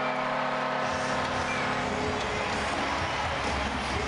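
Arena crowd cheering a goal over a low, steady goal horn that fades out about two seconds in. Music with a heavy bass comes in partway through.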